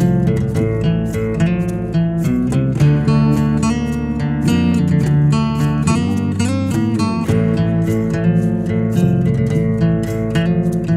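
Bluesy guitar playing with no vocals: plucked and strummed chords and single notes, with a few notes sliding in pitch about two-thirds of the way through.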